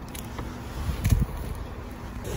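Low rumble inside a car with its window open, with one louder, muffled low buffet against the microphone about a second in.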